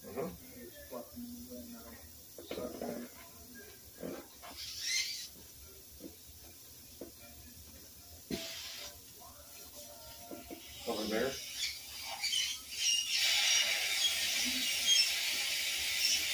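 Dental equipment at a patient's open mouth: two brief hisses, then about thirteen seconds in a steady hiss starts and keeps going.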